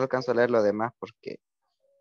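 A person speaking for about a second and a half, then a pause.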